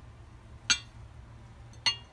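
Two sharp metal clinks a little over a second apart: lathe saddle retainer plates knocking on the saddle casting and on each other as they are handled and set down.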